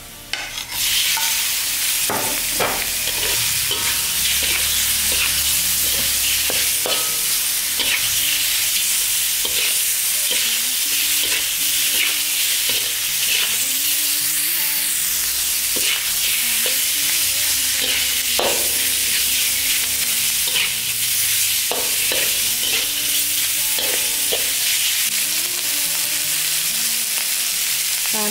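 Pork belly pieces sizzling loudly in hot oil in a wok at medium heat. The hiss starts suddenly about a second in as the meat goes into the pan and stays steady, with the occasional click of a spatula stirring the meat.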